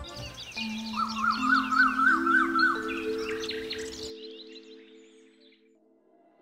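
Soundtrack transition: birds chirping rapidly over a soft sustained chord that builds up one note at a time, then both fade out about four seconds in.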